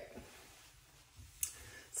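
A plastic hair clip clicking shut once, about one and a half seconds in, against quiet room tone.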